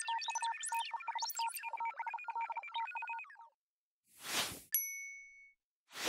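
Cartoon sound effects: rapid electronic bleeps and chirps for about three and a half seconds, then a whoosh, a bright ding that rings briefly, and a second whoosh at the end.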